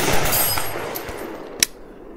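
A single shot from a Palmetto State Arms PSAK-47 AK rifle in 7.62x39. Its report fades away in echo over about a second and a half, and one short sharp crack comes near the end.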